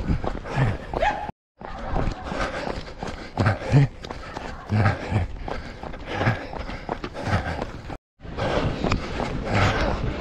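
A runner's heavy breathing and footfalls while running on pavement, picked up by a handheld camera. The sound cuts out briefly twice.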